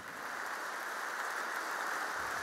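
Audience applause in a large hall, swelling and then holding at a steady level.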